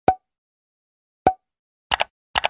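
Animated end-screen pop sound effects: two short pops about a second apart, then a quick double click near the end, as subscribe-style buttons appear.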